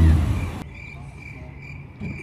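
A loud low rumble fades out in the first half second, then a cricket chirps steadily, about three short chirps a second.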